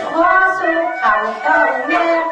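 Tai Lue khap (ขับลื้อ) singing: one high voice holds long notes that waver and bend in pitch, over a light musical backing.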